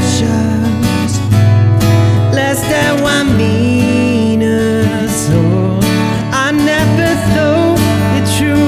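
A song played on acoustic guitar: steady strummed chords with a wavering melody line above them.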